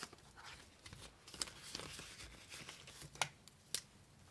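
Paper banknotes rustling and crinkling faintly as a stack of bills is handled, with a few short sharp clicks, two of them near the end.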